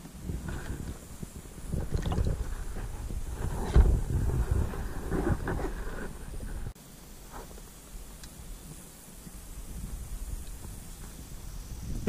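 Wind buffeting the microphone as a low, uneven rumble, with scattered knocks and rustles, dropping off suddenly just past halfway to a quieter hiss.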